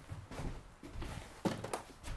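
Faint scattered knocks and handling noises of people moving about in a small room, with a sharper click about one and a half seconds in.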